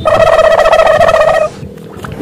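A loud, high warbling trill like a turkey's gobble, held on one pitch for about a second and a half and then cut off.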